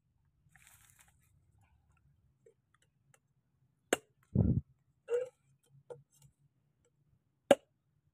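Machete chopping into the husk of a fresh coconut: a sharp strike about four seconds in with a heavier thud just after it, a few lighter knocks, and another sharp strike near the end.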